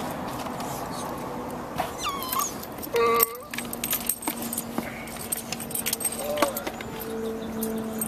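Small metal jingling and clicking from a small dog's collar tags and leash clip as the leash is clipped on, over a steady low hum.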